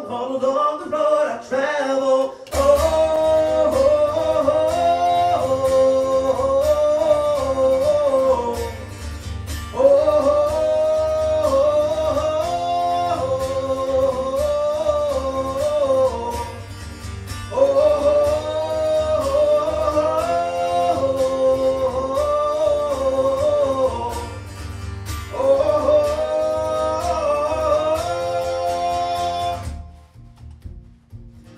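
Live acoustic guitar with a male voice singing a wordless melody in four repeated phrases of about eight seconds each. A low, steady bass layer comes in about two and a half seconds in.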